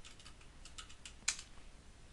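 Computer keyboard typing: a quick run of about six faint keystrokes, the loudest about a second and a quarter in.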